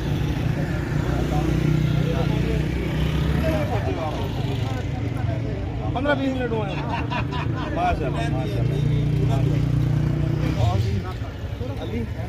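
Low rumble of motor-vehicle engines on the road, swelling twice as vehicles go by, under men's voices talking.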